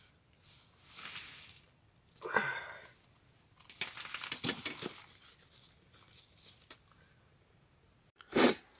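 Faint rustling and crunching of an angler handling gear on the ice: clothing and hands moving, with a brief vocal sound about two and a half seconds in and a run of small clicks and scrapes from about four seconds as the jig line is lowered into the hole.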